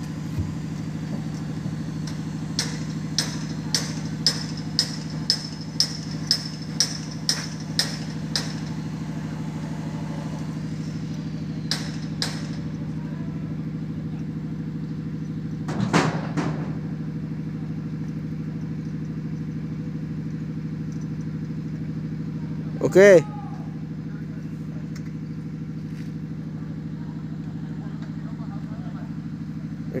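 A steady low machine hum. About a dozen sharp metallic ticks sound at roughly two a second in the first eight seconds, with a few more clicks and a short knock later.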